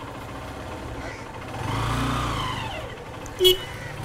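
A motor vehicle driving past over steady street noise, its engine swelling to a peak about halfway through and falling in pitch as it goes by. A brief sharp sound comes near the end.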